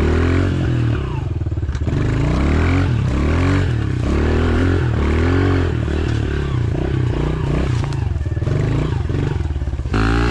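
A Honda pit bike's small four-stroke single-cylinder engine is being ridden over rough trail ground. It revs up and drops back again and again as the throttle is worked, with brief lulls about a second in and near the end.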